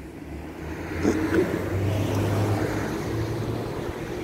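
A motor vehicle's low engine hum and road noise, swelling over the first two seconds and easing off near the end.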